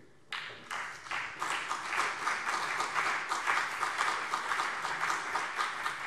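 Applause from many people clapping in a parliament chamber. It breaks out about a third of a second in, holds steady, and begins to die down just after the end.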